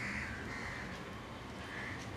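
Crows cawing, about three short caws over faint outdoor background.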